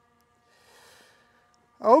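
A soft, faint breath, a sigh or exhale, about half a second in. A man's voice starts speaking near the end.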